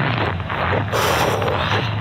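Wind buffeting a handheld camera's microphone: a loud, rough, steady noise with a brief sharper hiss about a second in.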